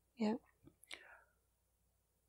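A single quiet spoken "yeah", a brief breathy sound about a second in, then near silence: a pause in a two-person conversation.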